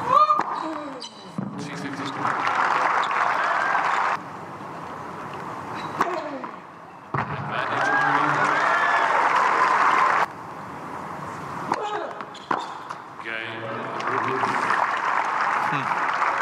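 Arena crowd cheering and applauding at a tennis match in loud stretches of a few seconds that cut off abruptly, with a few sharp knocks of tennis ball on racquet or court in the quieter gaps between them.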